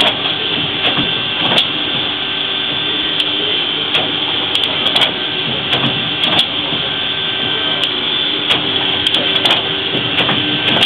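Industrial guillotine paper cutter running: a steady machine hum with irregular sharp clicks and knocks.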